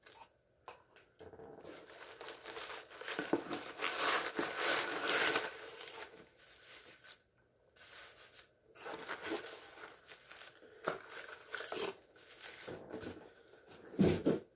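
Honeycomb kraft paper wrapping crinkling and rustling as paper-wrapped perfume bottles are lifted out of a cardboard box and set down one by one. It comes in irregular bursts and is loudest about four to five seconds in.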